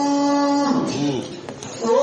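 A man's voice chanting Quranic recitation in Arabic, holding one long steady note that slides down and trails off, a brief breath pause, then resuming on a rising note near the end.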